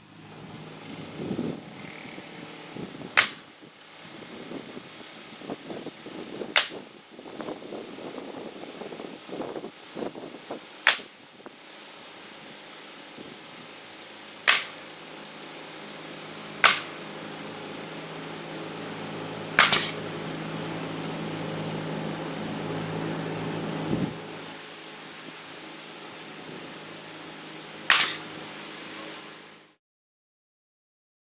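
Pneumatic nail gun firing nails through barn-wood siding into the studs: single sharp shots every few seconds, about eight in all, two in quick succession near the middle. A steady low motor hum builds through the middle and cuts off suddenly about two-thirds of the way in.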